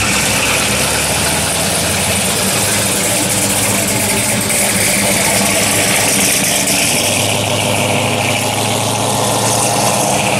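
Engines of classic pickup trucks and a large convertible running at low speed as they drive past one after another, a steady engine hum whose low note changes about seven seconds in as the next vehicle comes by.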